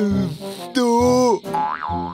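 Cartoon comic sound effect over background music: a short tone that sweeps up and back down near the end, after a long drawn-out spoken "do" (two).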